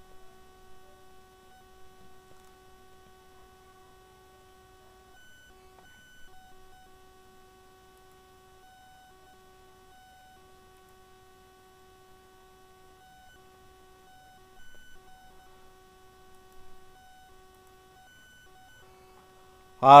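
Faint steady electrical whine with a few higher overtones, cutting out briefly now and then, with a couple of soft bumps near the end.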